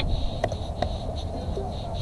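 Steady low outdoor rumble with a faint steady high tone, broken by two short clicks about half a second and just under a second in.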